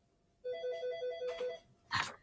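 Telephone ringing: a fast-pulsing electronic ring lasting about a second, followed by a brief knock near the end.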